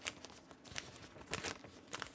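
A plastic comic bag and cardboard backing board being handled: faint crinkling rustles and a few light clicks, the loudest about a second and a half in.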